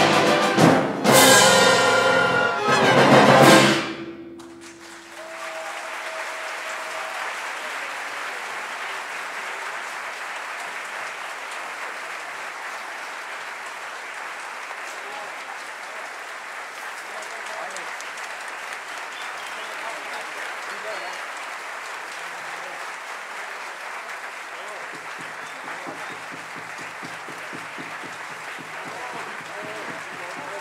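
A symphony orchestra with brass and timpani playing the loud closing chords of a piece, which end about four seconds in. Sustained audience applause follows and runs on steadily.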